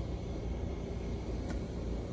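Steady mechanical hum of a DTF powder shaker and dryer running, its powder spirals and belt turning, with one faint click about one and a half seconds in.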